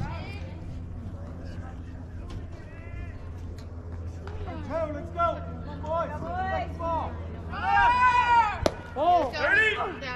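Players and spectators shouting and calling out in high, unintelligible voices through the second half, loudest about eight seconds in. A single sharp pop comes about nine seconds in as the pitch smacks into the catcher's mitt, over a steady low hum.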